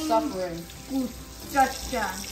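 Short bursts of talking over a kitchen tap running into the sink.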